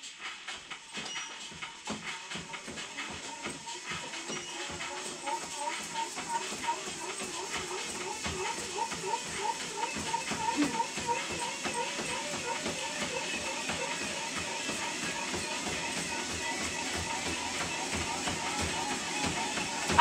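Music plays over the steady footfalls of someone running on a motorised treadmill belt, the footfalls growing louder as the pace picks up.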